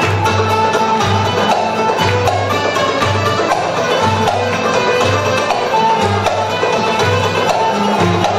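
Turkish folk ensemble playing an instrumental passage: plucked bağlamas (long-necked saz lutes) carry the melody over a steady, regular low drum beat.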